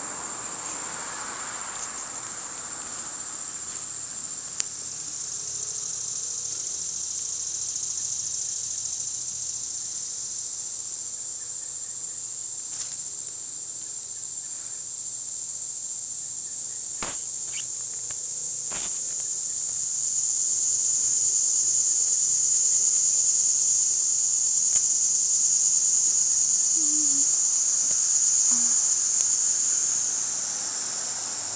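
Steady high-pitched insect drone, a summer chorus of buzzing insects, swelling louder about two-thirds of the way through. A few faint clicks sound around the middle.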